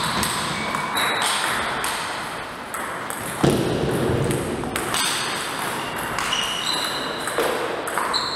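Table tennis ball being hit back and forth with paddles and bouncing on the table, a string of short, sharp pings. There is a pause in the middle with a single loud thud about three and a half seconds in, and the pings start again near the end as a new rally begins.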